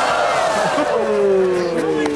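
Crowd of spectators letting out a long, falling "ohhh" as a skier wipes out into the pond.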